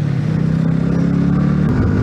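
Yamaha MT-125's single-cylinder 125 cc four-stroke engine running under way at a steady note, then stepping up in pitch near the end as the bike accelerates.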